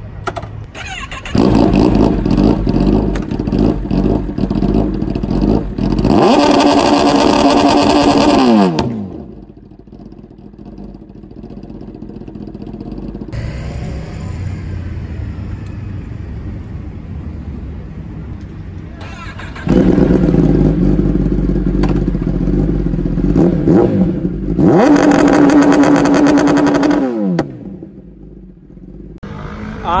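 Kawasaki ZX-10R inline-four sportbike engine revved hard while standing, twice. Each time the revs climb and then hold at one steady high pitch for two to three seconds, pinned by the launch control rev limiter, before dropping back. Between the two runs the engine ticks over more quietly.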